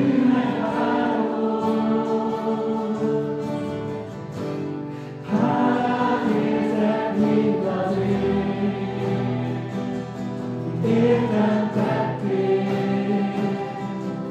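A group of mixed young voices sings a Hungarian worship song together to strummed acoustic guitars, in three phrases starting at the outset, about five seconds in and about eleven seconds in.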